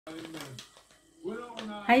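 A woman's voice speaking, with a short pause about halfway through and a drawn-out greeting at the end.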